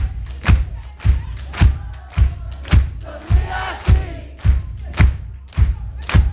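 Live band music recorded from within the crowd: a heavy beat hitting about twice a second, with voices singing over it.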